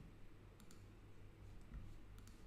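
Near silence: room tone with a couple of faint clicks from working the computer.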